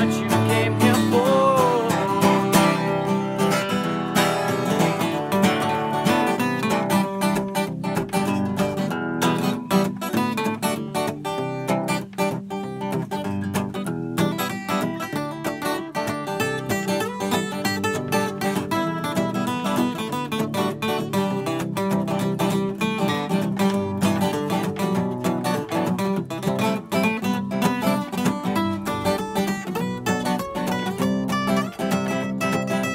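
Two acoustic guitars played together, strummed and picked chords running steadily through an instrumental passage.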